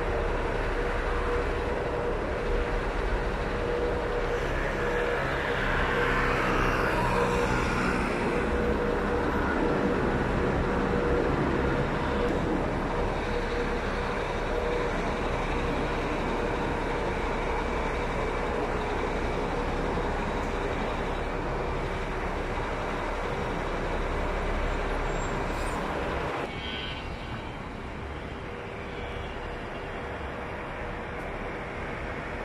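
Road traffic in a city street: a steady wash of vehicle and engine noise with a constant hum, one vehicle louder as it passes about six to eight seconds in. The noise drops suddenly near the end.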